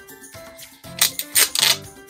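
Clear plastic sleeve of a photo-etched brass fret crinkling as it is handled, a few sharp rustles close together about halfway through, over soft background music.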